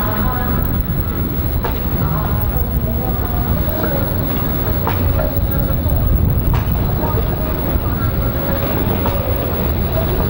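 A Bombardier E-class low-floor tram rolls along the street track with a steady low rumble, and a few faint clicks come from its wheels on the rails.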